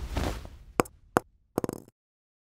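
Sound effects for a logo animation: the fading tail of a swoosh, then two sharp knocks about half a second apart and a quick rattle of clicks.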